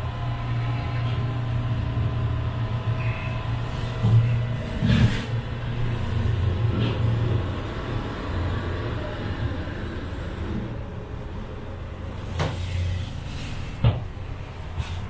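Steady low running hum of a Hungerburgbahn funicular car heard from inside the cabin as it moves through a station. A few short clunks come through, the clearest about five seconds in and two more near the end.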